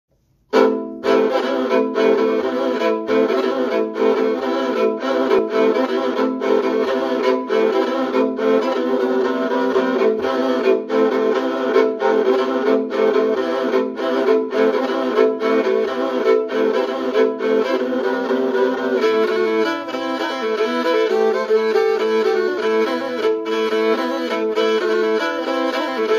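A four-string tagelharpa (bowed lyre) tuned E-A-E-C, bowed with a sustained drone under a melody, with the minor-third C string used as the bass. It starts about half a second in, with bow changes about twice a second. About three quarters of the way through the melody becomes busier.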